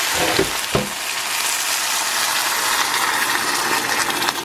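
Chicken broth poured from a measuring cup into a hot stainless skillet of browned rice, sizzling and hissing steadily as it boils on contact with the pan.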